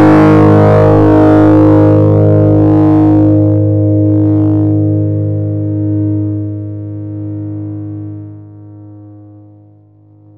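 Electric guitar through a fuzz distortion effect, struck once and left to ring: the sustained tone decays slowly. As it falls below the downward expander's threshold near the end, it fades down smoothly rather than being cut off.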